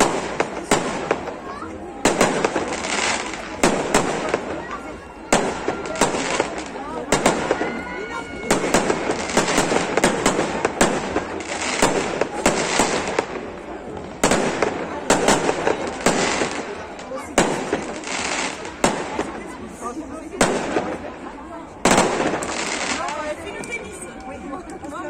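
Aerial fireworks display: shells bursting overhead in rapid succession, sharp bangs one or two a second, each trailing off into crackle and echo. Crowd voices murmur underneath.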